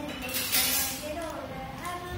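A girl singing unaccompanied, holding and gliding between notes, with a loud hiss about half a second in.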